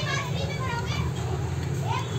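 Children's voices chattering and calling in the background over a steady low hum.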